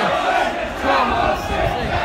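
Football crowd in a stand, many voices shouting and chanting together.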